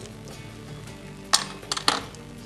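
Small hard chess pieces clicking and clinking: one sharp click, then a quick run of three clinks near the end, as pieces are handled at a demonstration chess board.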